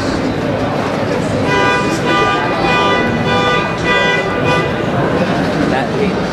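Crowd chatter in a large hall. Over it, a horn-like pitched note sounds in about five short blasts, starting about a second and a half in and lasting around three seconds.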